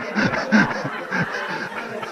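A man laughing in a run of short chuckles, about three or four a second, tailing off near the end.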